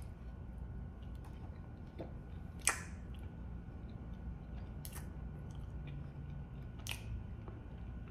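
Quiet mouth-closed chewing of a bite of soft black-and-white cookie, a cookie the eater calls soft, mushy and chewy. Three short wet mouth clicks come through, the first and loudest a little under three seconds in, the others about two seconds apart.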